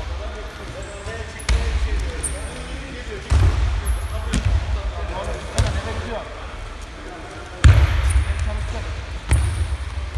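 Irregular heavy thuds of wrestlers' bodies and feet hitting the foam wrestling mats, echoing in a large gym hall, about six in a few seconds, with voices talking in the background.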